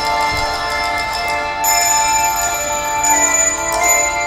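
Handbell choir playing: brass handbells ringing in chords that sustain and overlap, with new chords struck every second or so.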